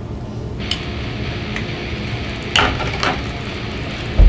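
A metal fork clicking against a plate several times, the loudest knock about two and a half seconds in, over a steady background hiss.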